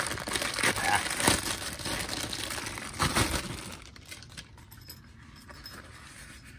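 Thin clear plastic bag crinkling as it is pulled off a nylon tool pouch, for about three and a half seconds with a few sharper crackles, then dying down to quiet handling of the fabric.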